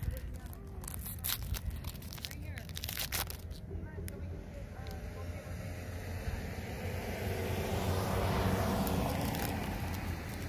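Foil wrapper of a Bowman Sapphire trading card pack crinkling and tearing open in the first few seconds. Then a car passes along the road, the noise building to its loudest near the end, with people's voices in the background.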